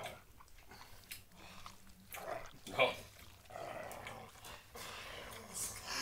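Faint mouth noises and low throaty sounds of a man chewing a piece of jerky, with a short 'huh' a little under three seconds in.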